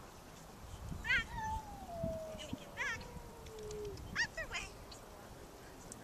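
Sheep bleating: several short, quavering calls, the loudest about a second in, with a long, slowly falling whine running beneath them from about one and a half seconds in to four seconds in.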